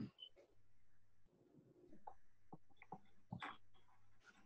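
Near silence: room tone with a low hum and a few faint short clicks, the clearest about three and a half seconds in.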